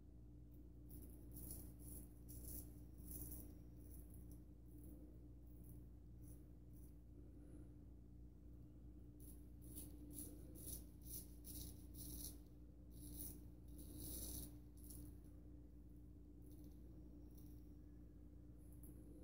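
Faint, short scraping strokes of a vintage Magnetic Silver Steel 13/16" full hollow straight razor cutting stubble through shaving lather. The strokes come in clusters of several, over a steady low hum.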